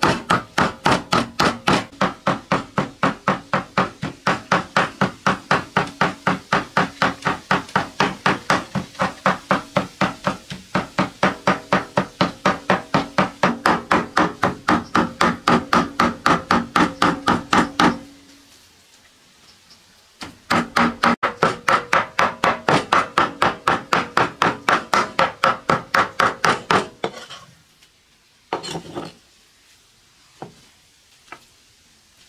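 Heavy cleaver mincing raw pork by hand on a round wooden chopping block: fast, even chops about four a second, each with a slight woody ring. The chopping breaks off for about two seconds a little past halfway, starts again, then ends with a few separate knocks.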